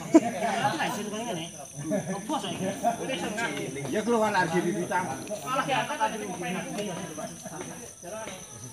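Men's voices talking in the background, not close to the microphone, over a steady high-pitched drone of insects.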